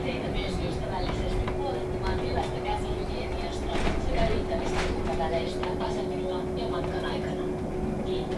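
Cabin noise of a VDL Citea SLE-129 electric bus under way: a low road rumble with a steady hum held at one pitch, and scattered light clicks and rattles.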